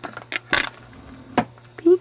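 Small hand tools handled on a wooden tabletop: a short hissing rustle, then a single sharp click as a craft knife is set down. A low steady hum runs underneath.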